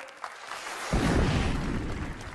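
TV show transition sting: a high airy whoosh, then about a second in a deep boom that rings on and fades.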